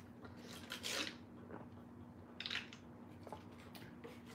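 Faint brief rustles and a few small clicks over a steady low hum.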